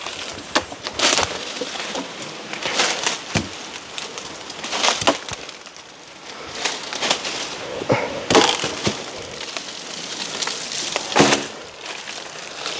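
Machete chopping at a fallen tree trunk: a run of irregular sharp strikes of the blade into the wood, with cracking and splintering.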